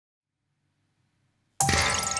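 Near silence, then near the end a sudden loud metallic clang that rings on with several held tones as a live ensemble of electronic wind instruments, electric guitar, keyboard, percussion and cello comes in.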